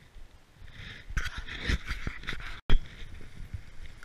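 Cannondale Scalpel 29er mountain bike riding over a forest track: tyres crunching on dirt and the bike rattling, louder from about a second in. A brief dropout about two-thirds of the way through is followed by a sharp knock, then tyres rolling over dry fallen leaves.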